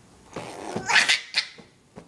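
A baby's breathy laughter in a few short bursts, starting about half a second in and loudest around one second.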